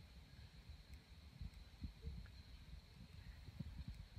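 Near silence: faint woodland quiet with a few soft, low knocks scattered through it.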